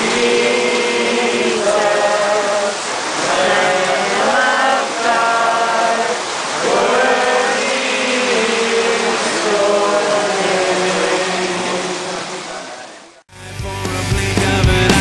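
A group of voices singing together in a slow, chant-like song with long held notes. About 13 seconds in it cuts off abruptly, and a louder rock-style music track with guitar begins.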